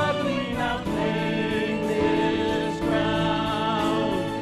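A mixed-voice praise team singing a contemporary worship song in harmony over instrumental accompaniment, with long held notes.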